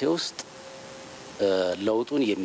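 A man speaking into microphones, pausing for about a second midway before carrying on.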